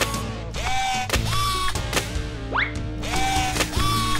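Background music over repeated clicking and ratcheting of jointed plastic toy parts being folded and snapped into place, with a short rising sweep about two and a half seconds in.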